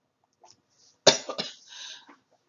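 A woman coughing: a short burst of two or three quick coughs about a second in, the first the loudest.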